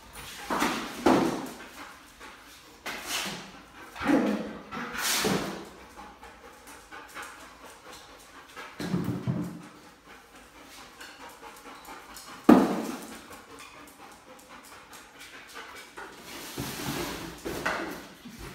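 A dog searching among cardboard boxes on a tile floor: a series of short, noisy bursts of breathing and movement. A single sharp knock comes about twelve and a half seconds in.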